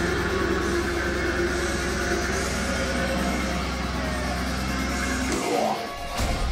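Heavy metal band playing an instrumental passage over a deep, sustained bass. The bass drops out about five seconds in.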